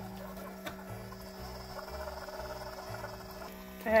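Keurig single-cup coffee maker brewing a K-cup pod, with a steady hum under a thin stream of hot coffee pouring into a mug of powder.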